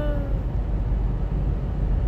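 Steady low rumble of a car's tyres and engine heard from inside the cabin while driving. A person's voice trails off a held note in the first half-second.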